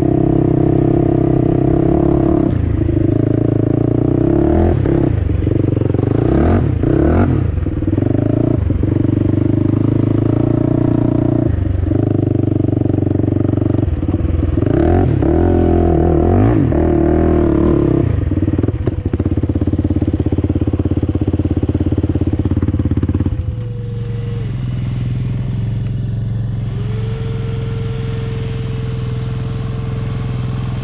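Single-cylinder sport ATV engine under way on a sandy trail, revving up and down several times with the throttle as the quad rattles over rough ground. About 23 seconds in it drops to a steady idle.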